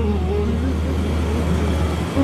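A steady low hum, with faint held tones fading out in the first half second.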